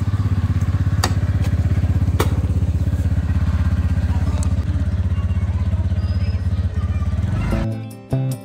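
Motor scooter engine idling close by: a steady, fast low pulsing, with two sharp clicks early on. Music takes over near the end.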